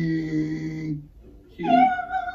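A man's drawn-out, held vocal sound on one low pitch. After a short pause comes a high-pitched held note that falls slightly, sung or squealed like a meow.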